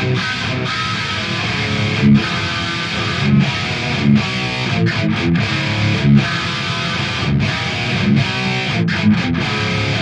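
Dean Razorback electric guitar played through heavy distortion, a metal riff broken by a string of short, sharp stops.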